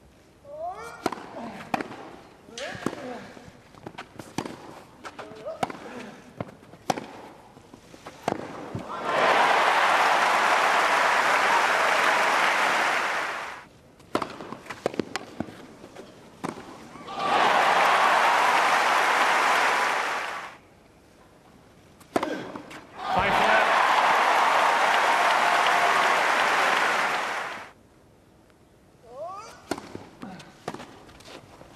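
Tennis balls struck by rackets and bouncing on a grass court, a series of sharp pops, then a large crowd applauding three times, for about three to five seconds each: about nine seconds in, about seventeen seconds in, and from about twenty-two seconds in.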